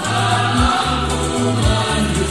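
A choir singing an Indonesian Catholic hymn over an instrumental accompaniment, with sustained bass notes changing about once a second.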